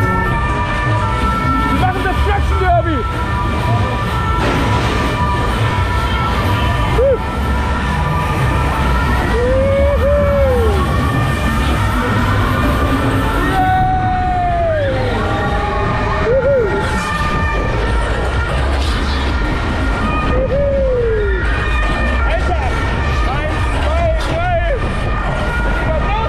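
Loud fairground ride sound system playing music with a heavy bass beat while the ride runs, overlaid every few seconds by a rising-and-falling whoop.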